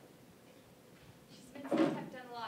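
A single short wooden clunk about a second and a half in, as a small wooden box is handled on top of a wooden chest.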